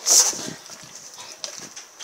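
Rottweiler gnawing and tearing at a raw pork shoulder. One loud burst of chewing comes right at the start, followed by small wet chewing clicks.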